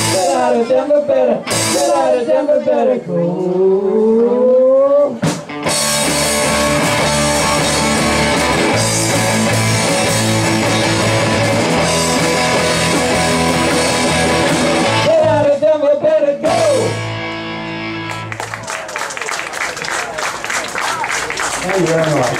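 Live rock band of electric guitars, bass, drum kit and male vocals finishing a song. Singing over the guitars rises in a long upward slide, then a drum hit leads into a long held closing chord with the bass stepping under it. Near the end, applause and clapping from the audience come in.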